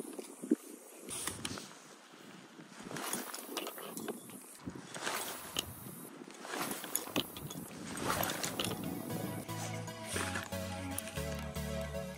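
Spinning reel being cranked to retrieve line, a light mechanical turning with small clicks. About two-thirds of the way through, background music with a steady stepped bass line comes in.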